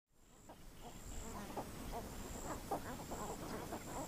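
Faint floodplain wildlife ambience: scattered short bird calls, with a high steady insect buzz that comes and goes in stretches of about half a second.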